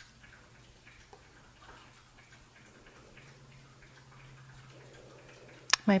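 Puppies lapping water from their bowl, heard as faint, rapid ticking laps over a low steady hum.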